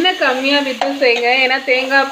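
Mint leaves, onions and spices sizzling in hot oil as they are stirred with a spoon in an open aluminium pressure cooker. A voice with a smoothly rising and falling pitch runs over it and is the loudest sound.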